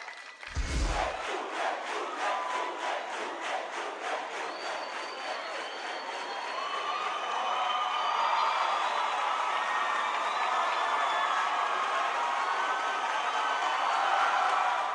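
Large rally crowd cheering and shouting in response to a speech. A single low thump comes about half a second in. An even rhythmic pulse of about three beats a second runs through the first half, and then the cheering swells louder.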